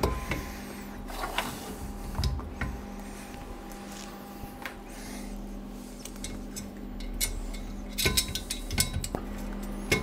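Small metal-on-metal clicks, clinks and scrapes as a gear motor and its flange are set onto a welded steel frame and screws are fitted with a hex key, with a cluster of clicks about eight seconds in. A steady low hum runs underneath.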